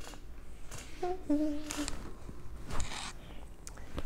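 Soft rustling and scraping of tarot cards being picked up and handled, in two short bursts about one and a half and three seconds in, with a brief murmured hum about a second in.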